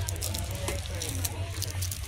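Shop background sound: a steady low hum under faint voices, with short rustling ticks from packaging or handling.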